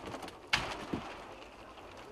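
Large wooden wall panels of a makeshift shack being pushed over and handled: a sharp knock about half a second in, then a lighter one.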